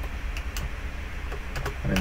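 A few faint, short clicks from a computer mouse and keyboard being worked, over a steady low hum.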